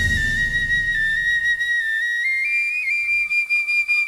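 Bansuri (bamboo flute) playing a long, held high note almost alone, rising in small steps to a slightly higher note about two to three seconds in. The backing band's last sound fades out under it in the first second or so.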